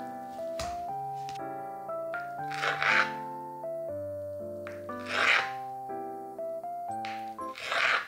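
Gentle background music with steady sustained notes. Over it, three times about two and a half seconds apart, comes a short rasping cut: a knife slicing down through a block of pressed firm tofu onto a cutting board.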